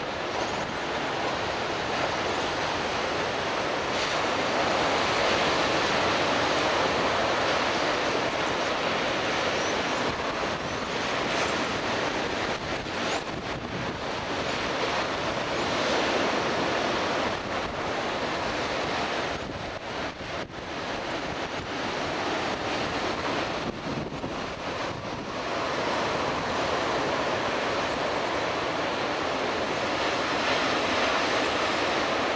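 Ocean surf breaking on a beach: a continuous rushing wash of waves that swells and eases.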